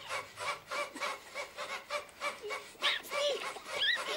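A man making a rapid run of short, high, squeaky vocal noises, about three a second, a few of them gliding up in pitch, like an animal panting or whimpering.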